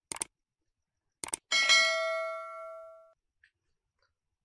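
Two quick mouse clicks, then two more, then one bell ding that rings and fades over about a second and a half: a subscribe-button animation sound effect.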